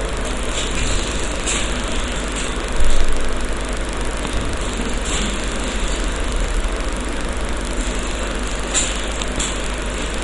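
Steady background noise with a low hum, broken by a few faint clicks and a brief louder swell about three seconds in.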